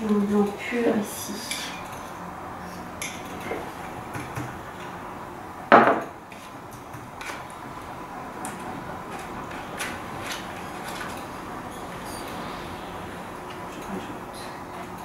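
Metal painting knives clinking and tapping as they are handled and set down among the paints, with one loud sharp clack a little before the middle.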